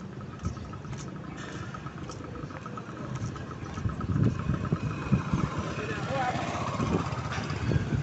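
Street ambience: a motor vehicle engine running, with gusts of wind buffeting the microphone that grow stronger about halfway through.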